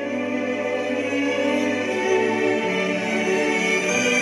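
Slow classical music built of sustained chords that change slowly, growing a little louder in the first second.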